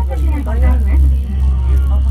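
Steady low rumble inside a ropeway gondola as it rides up the cable, with a voice talking over it.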